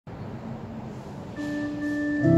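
Electronic organ starting to play. A faint hiss, then a single held note comes in about one and a half seconds in.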